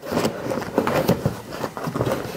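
Crinkling and rustling of a black plastic sleeve as it is stretched and worked by hand over the end of a leaf vacuum's impeller chute: a dense, crackly rustle throughout.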